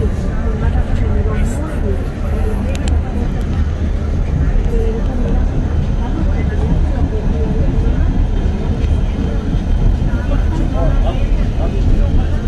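Passenger train running, heard from inside the carriage: a steady low rumble. Voices murmur in the background.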